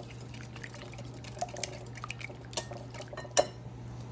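Raw eggs being whisked in a glass mixing bowl: a utensil clicks and taps against the glass in quick, irregular strokes through the liquid, with one louder clink about three and a half seconds in.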